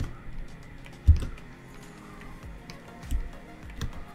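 Quiet background music with a few scattered computer-keyboard clicks; the loudest sound is a low thump about a second in.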